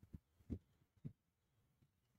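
Near silence, broken by three soft, low thumps in the first second or so, spaced about half a second apart.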